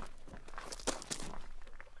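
Footsteps shuffling on gravel, a few scuffing steps bunched about a second in.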